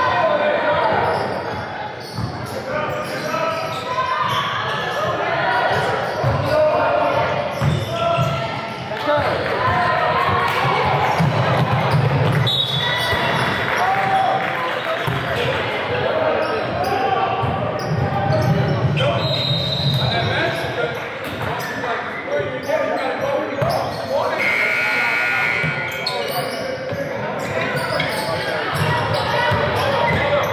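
Basketball ball bouncing on a hardwood gym floor during play, with players' and spectators' voices echoing in the large hall.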